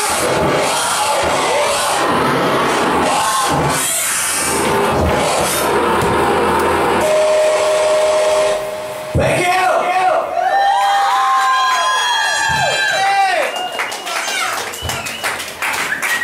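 Loud live industrial rock band playing, stopping abruptly about nine seconds in, followed by an audience cheering and whooping.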